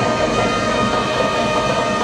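Brass marching band of saxophones, trumpets and sousaphone holding long, steady chords.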